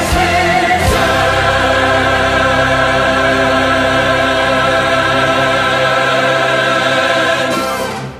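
Choir and orchestra holding the final chord of a choral anthem, after a sharp percussion hit about a second in; the chord releases near the end and begins to ring away.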